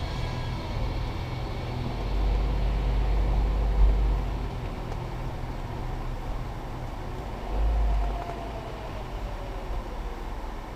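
Car interior road noise and low engine rumble while driving, as picked up by a dashcam microphone. The low rumble swells louder for about two seconds starting about two seconds in, and again briefly about seven and a half seconds in.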